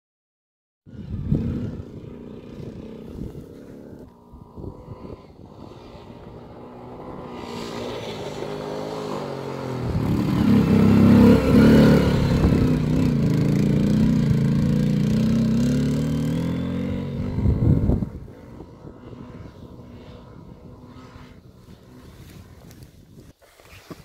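Yamaha Champ 100 ATV's small single-cylinder four-stroke engine running under throttle. It starts about a second in, grows louder as the quad comes close, and revs with a rising and falling pitch through a loud stretch in the middle before dropping back to a lower level.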